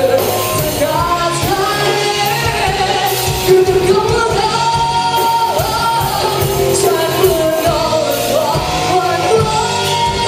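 Live rock band playing a pop-rock song: a singer over electric guitar, bass guitar and drums, continuously and loudly.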